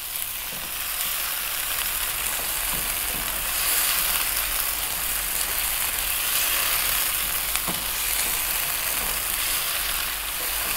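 Chicken strips, onions and peppers sizzling in sweet and sour sauce in a hot nonstick wok while being stirred with a slotted spatula: a steady sizzle with a couple of faint scrapes.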